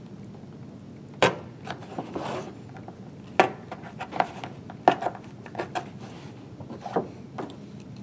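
A safety knife poking holes through the cloth-covered board spine of a hardcover book, with the book handled on the table: about nine irregular sharp clicks and knocks and a short scrape near two seconds in.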